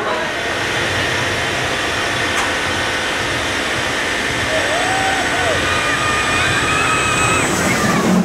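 Intamin tire-propelled launched roller coaster train rolling out of a tunnel over a tire-driven section of track: a steady rumble with a steady whine from the turning drive tires. Riders' voices come in near the end.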